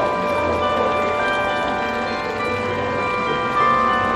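Clock-tower bell chimes playing a tune: overlapping bell notes ring on and decay into one another, with a strong new note struck near the end.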